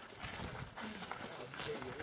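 Footsteps of several people walking on a gravel path, a rhythmic crunching, with faint talk from the group.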